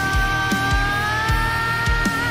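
Rock band music playing: a steady kick-drum beat about twice a second under one long held note that rises slightly about halfway through.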